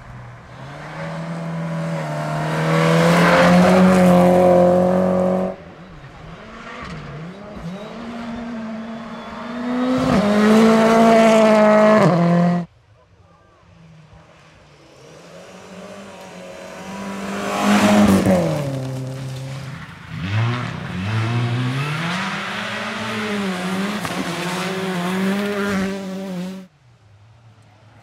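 Rally cars at full throttle on a gravel stage, one after another. Each engine revs up through the gears with short dips at the changes and then cuts off suddenly as the next car comes in.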